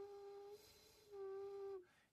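Unfired clay ocarina blown with light breath, sounding two short, steady notes at the same pitch with a breathy rush of air between them. The voicing window and airway cut into the wet clay now make it sing.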